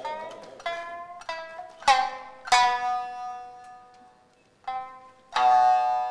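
Kiyomoto shamisen playing a slow phrase of single plucked notes, each sharp at the start and ringing away. About five notes fall in the first two and a half seconds, then there is a pause of over a second, and two more notes come near the end.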